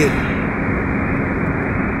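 Steady road noise inside a car's cabin while driving along a highway: an even rumble of tyres and engine with a faint low hum.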